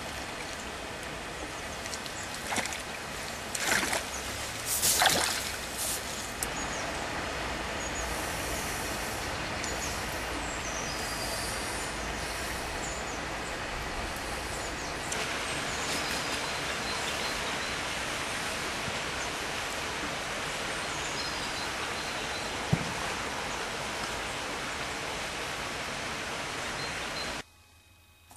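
A hooked chub splashing and thrashing at the surface several times in the first six seconds, the loudest splashes around four and five seconds in, over a steady rushing noise like running water that grows a little brighter about halfway through.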